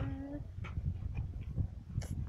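A boy's voice holding a drawn-out 'was…' on one slightly rising note while he searches for a word, ending about half a second in. After it comes a low, rough rumble of outdoor noise on a handheld phone microphone, with a few faint clicks.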